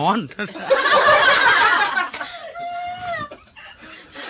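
Audience laughing together, loudest from about a second in and fading after two seconds, with one voice trailing on in a drawn-out note near the end.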